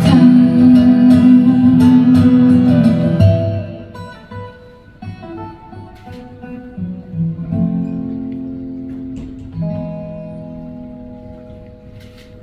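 Acoustic guitar accompanying a slow ballad in a live performance: full and loud for about the first three seconds, then dropping away to soft, sustained chords.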